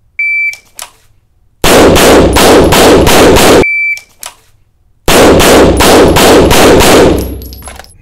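A shot timer beeps, and a 9mm pistol fires a fast string of about six shots from the draw in roughly two seconds. The timer beeps again and a second string of about six shots follows. Each string echoes in the indoor range, and the echo dies away near the end.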